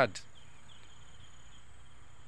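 Faint outdoor background with a high chirping repeated every fraction of a second, typical of insects such as crickets.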